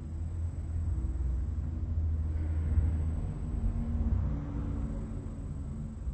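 Low background rumble that swells a little in the middle and eases off again.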